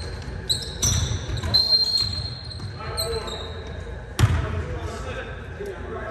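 A basketball bouncing and thudding on a hardwood gym floor, with the loudest bang about four seconds in and ringing on in the big hall. Sneakers squeak in short high chirps on the floor in the first half.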